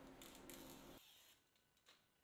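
Near silence: faint room tone with a few light handling clicks, and the background falls away about a second in.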